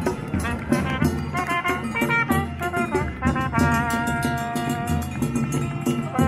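Chindon street band playing: a trumpet carries the melody over the steady beat of a chindon drum rig. Partway through, the trumpet holds one long note.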